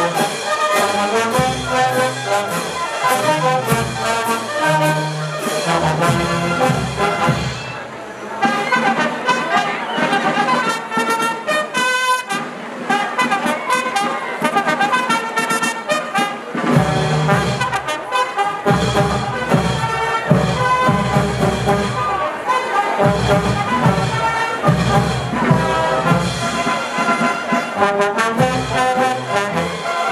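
A brass band playing: trumpets, trombones and sousaphones over bass drum, snare drum and cymbals. The bass drum grows heavy in the second half.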